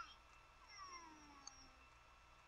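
Very faint, drawn-out cry that slides slowly down in pitch, starting about half a second in and lasting over a second, over near silence.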